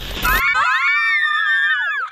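A hissing static burst from a glitch transition effect cuts off about half a second in. Then several high-pitched voices shriek together in excited celebration at having made it to the finish.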